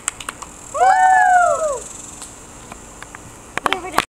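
A girl's high-pitched squeal, one call of about a second that rises and then falls in pitch, starting about a second in, over scattered light clicks and taps. Another short burst of voice comes near the end.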